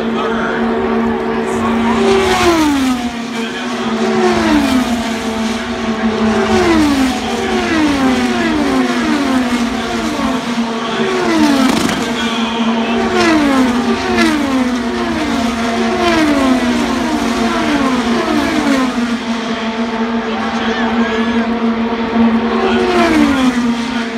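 IndyCar race cars' twin-turbo V6 engines passing one after another at racing speed, each engine note dropping in pitch as the car goes by, about twenty passes in all over a steady hum.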